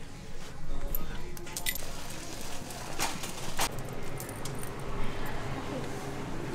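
Store ambience with faint background voices and a few sharp clicks and clinks scattered through the first four seconds.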